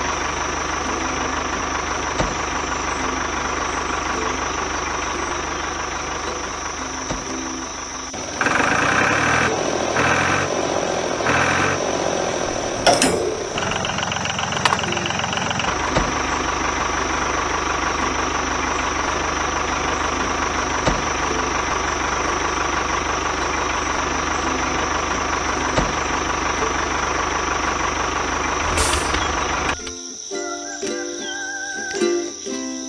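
Tractor engine running steadily at idle. About eight seconds in, it turns louder and rougher for some four seconds, ending in a sharp click.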